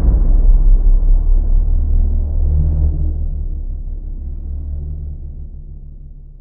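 Deep rumble of a cinematic boom sound effect, dying away slowly and nearly gone by the end, with low steady tones held underneath.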